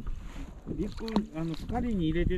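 A person talking, starting about half a second in, over a low steady rumble.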